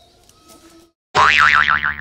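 Comic 'boing' sound effect added in editing: a loud, quickly wobbling tone that warbles up and down about six times in under a second. It starts suddenly about a second in, after a brief silence, and cuts off abruptly.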